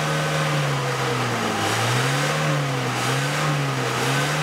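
A car engine running at its exhaust tailpipe during an exhaust emission test, with the analyser probe in the pipe. The engine is held at raised revs, its pitch wavering slowly up and down.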